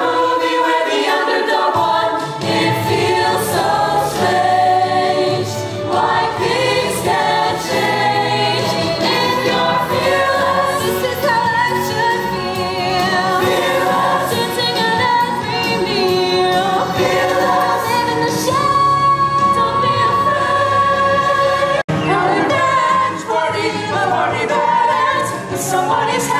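A musical-theatre ensemble singing a show tune in chorus over instrumental accompaniment, broken by a split-second gap near the end.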